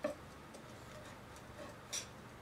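Kitchen knife and metal tongs working a breaded chicken cutlet on a plastic cutting board: a sharp click at the start and another near the end, with a few faint ticks between.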